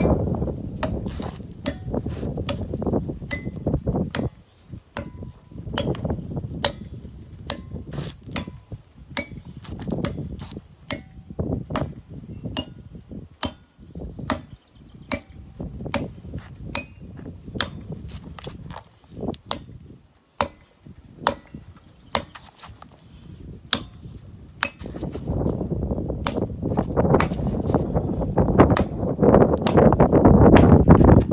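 Hand hammer striking steel plug-and-feather wedges set in a row of drilled holes in a granite slab, about two sharp, ringing strikes a second, as the wedges are driven in to split the stone. A low rumble swells in near the end.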